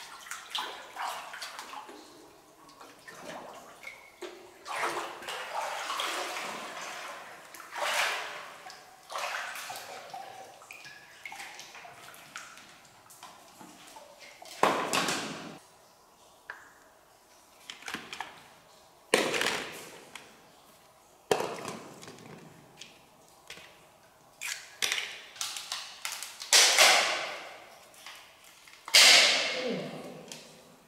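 Shallow water sloshing and splashing as someone wades and moves a basket through it. From about halfway on come separate sharp knocks and splashes as large freshwater mussels are handled and set down on wet rock, the loudest near the end.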